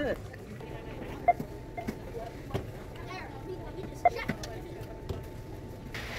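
Store ambience: faint background voices and a faint steady tone under low noise, with a few sharp clicks and knocks, the loudest about a second in and another about four seconds in.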